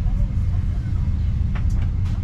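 Steady low rumble inside a parked airliner's cabin, the hum of its ventilation and ground power, with faint voices and a few light clicks shortly before the end.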